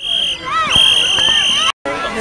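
A referee's whistle blown twice, a short blast and then a longer steady one of about a second, with children and adults shouting over it.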